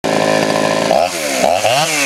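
Poulan Pro 330 two-stroke chainsaw running steadily, then revved up and down two or three times from about a second in.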